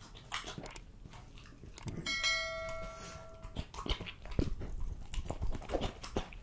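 French bulldog's mouth sounds close to the microphone: wet smacks and clicks of licking and chewing raw meat. About two seconds in, a bell chime from the subscribe-button animation rings for about a second and a half.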